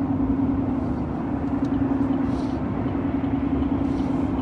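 Steady road and engine noise inside a moving car's cabin, with a constant low hum.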